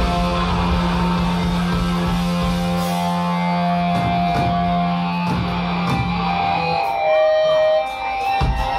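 Live hardcore punk band with distorted electric guitars holding a long ringing chord over a few separate drum and cymbal hits. The low held note stops shortly before the end, leaving a high feedback tone.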